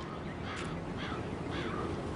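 A crow cawing faintly in the background over a steady outdoor background hum.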